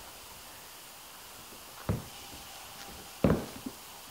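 Gloved hands kneading and squishing ground pork in a stainless steel mixing bowl, faint against room noise, with two short louder sounds, one about two seconds in and one a little after three seconds.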